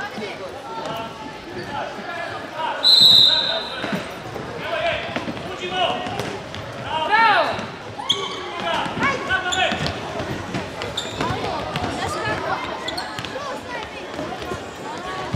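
Indoor futsal match: the ball thuds on the wooden hall floor, and players and spectators shout throughout. A referee's whistle gives one blast of about a second, roughly three seconds in, and is the loudest sound.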